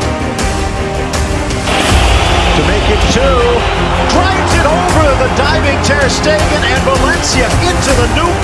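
Background music playing throughout. About two seconds in, loud match audio comes in over it: stadium crowd noise and a raised voice.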